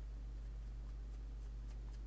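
Steady low electrical hum with a few faint, scattered ticks from small scissors cutting paper.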